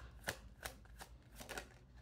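A deck of reading cards shuffled by hand: faint, soft clicks and flicks of cards against each other, about three a second.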